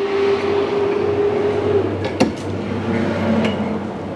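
A steady hum with an even hiss underneath, and a held tone that stops a little before two seconds in. One sharp click comes just past two seconds.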